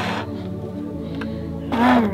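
Background music with steady held notes, getting louder near the end as a wavering, voice-like melodic line comes in.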